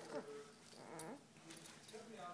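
Young baby cooing: short pitched vocal sounds that slide in pitch, with a single light click about halfway.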